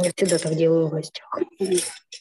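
Stray sounds from a video-call participant's unmuted phone microphone: clinking, with an indistinct voice. They are loud enough to take over the call.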